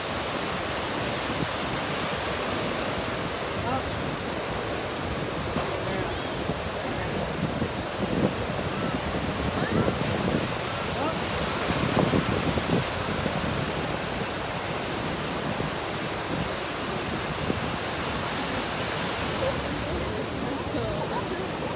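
Ocean surf breaking and washing onto a sandy beach, a steady rushing that swells louder a few times in the middle.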